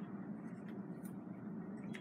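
Marker writing on a paper sticky note: a few faint, short strokes over quiet room tone.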